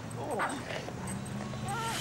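A voice singing 'ooh' several times over a steady low held tone from the song's backing.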